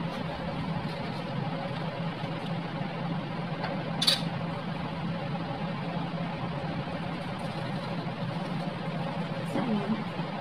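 Steady low mechanical hum with a faint hiss underneath, with one brief sharp click about four seconds in.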